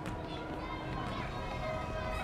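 Indistinct distant voices calling out over a faint steady hum, with a sharp click at the very start.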